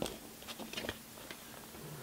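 A few faint clicks and light handling noise as a compact disc is lifted off the plastic hub of its digipak tray.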